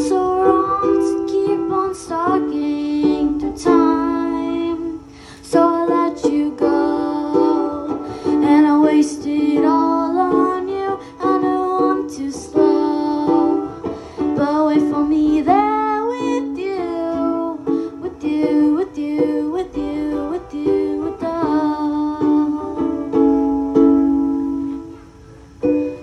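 A young girl singing a slow song while strumming chords on an acoustic-electric ukulele through a microphone. The singing pauses briefly a few times between lines while the strumming goes on.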